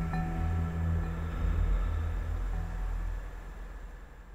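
Ambient background music: low sustained drone tones fading out toward the end.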